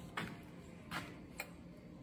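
Three faint clicks of loose square steel tubing pieces being touched and shifted on a steel welding table.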